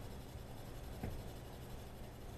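Colored pencil shading on coloring-book paper: a soft, steady scratching, with one brief tap about a second in.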